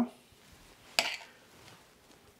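A spatula knocking once, sharply, against a glass mixing bowl about a second in, with quiet room tone around it.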